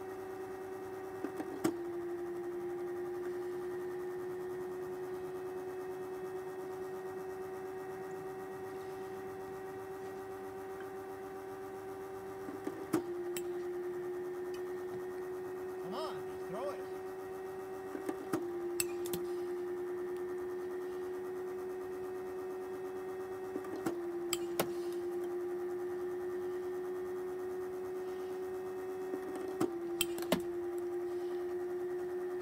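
Baseball pitching machine running with a steady electric-motor hum. Five times a sharp click comes and the hum sags in pitch for a moment before recovering, as the machine fires a ball and the motor takes the load.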